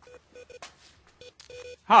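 A quick, irregular string of short electronic beeps on the same pair of steady pitches, like phone-keypad tones, played quietly.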